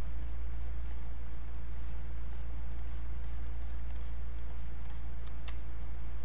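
A steady low hum under faint, irregular clicks and light scratches, a few each second, from hands working a computer's input devices at a desk.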